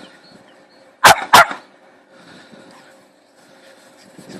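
A dog barks twice in quick succession, two short loud barks about a second in.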